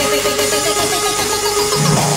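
Tekstyle/jumpstyle electronic dance music from a live DJ set: a fast repeating synth riff over a held tone, with a low bass line coming in near the end.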